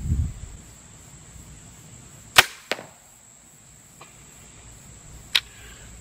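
TenPoint Viper S400 crossbow firing a bolt: one sharp, loud crack of the string releasing, followed about a third of a second later by a fainter smack as the bolt strikes a foam deer target 40 yards downrange. A short click comes a few seconds later.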